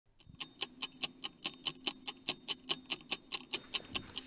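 Rapid, even, clock-like ticking, about five sharp, high ticks a second, over a faint low hum.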